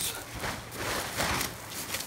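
A large sheet of kite Tyvek rustling and crinkling as it is shaken open, in two swells of rustle.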